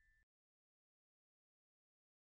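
Near silence: digital silence at a fade to black between two songs.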